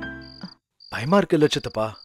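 Crickets chirping, a high chirp about twice a second. A sustained music chord fades out in the first half second, and a short vocal sound is heard around the middle.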